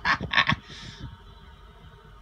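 A few short, broken vocal sounds from a person, then a breathy hiss about half a second in, followed by quiet room tone.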